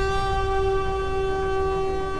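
Background score: one long held synthesized note, steady in pitch, over a low droning bed, used as a dramatic sting.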